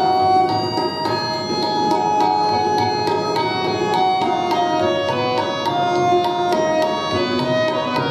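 Tabla drumming under a melody of held harmonium notes that move step by step, an instrumental passage with no voice.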